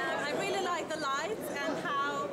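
A woman talking over the chatter of a busy market crowd.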